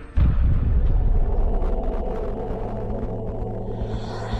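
A sudden deep boom about a quarter of a second in, settling into a steady low rumbling drone: a film sound effect or score sting.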